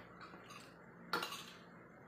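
Metal fork and spoon clinking and scraping against a plate: a few light taps, then a louder clatter about a second in.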